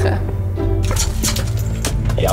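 Background music with a low steady drone. From about a second in, it is joined by a quick run of short sharp clicks: the steel pick of an ice axe striking and chipping glacier ice.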